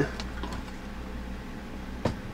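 Room tone: a steady low hum with faint hiss, and no distinct event.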